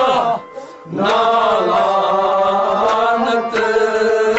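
Men singing Kashmiri Sufi kalam together. A sung phrase ends just after the start, and after a short breath the voices take up one long held note with a slight waver, then start a new phrase near the end.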